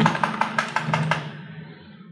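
Computer keyboard, one key tapped quickly about ten times in a row, clicking for a little over a second and then stopping; the text in a field is being deleted.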